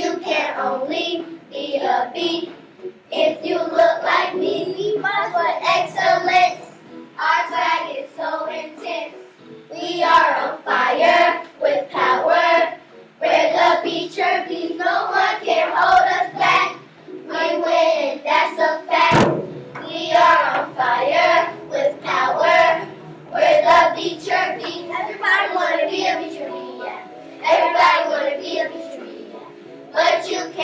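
A group of children singing a chant-like song together, with hand claps.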